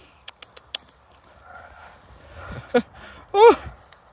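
Two dogs in a tug-of-war over a stick in long grass: a few sharp clicks near the start, faint rustling, and a brief high-pitched cry that rises and then falls near the end.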